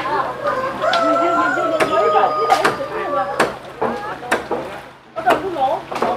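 A rooster crows once, one long drawn-out call of about two seconds that sags slightly in pitch, over distant voices. Sharp knocks sound every second or so.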